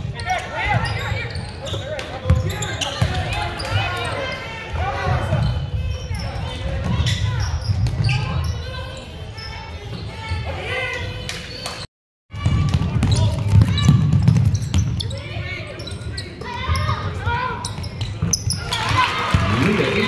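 Game sound of high school girls basketball in a gymnasium: a basketball bouncing on the hardwood floor under indistinct voices of players and spectators. The sound drops out briefly about twelve seconds in, then carries on.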